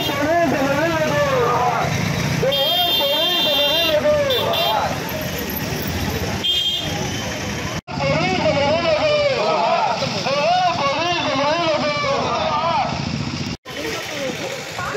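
Marchers' voices shouting slogans in unison, repeated phrase after phrase, over street traffic noise. A vehicle horn honks a few times in the first half.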